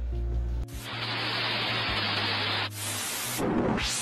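Old-television static sound effect: a hiss of white noise cuts in about half a second in, turns brighter and fuller near three seconds, and ends in a quick rising-then-falling sweep, over a low steady hum.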